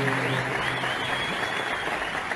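Concert audience applauding over the end of a held note from the ensemble, which fades out about halfway through.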